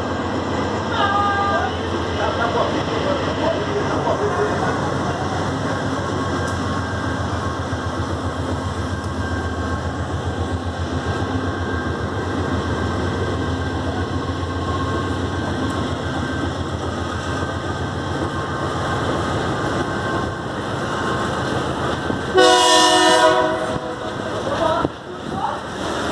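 Diesel-electric freight locomotive, a GE AC44i, running past at close range, then its freight wagons rolling by, with a steady low pulsing of engine and wheels on the rails. A horn blast about a second long sounds near the end and is the loudest sound.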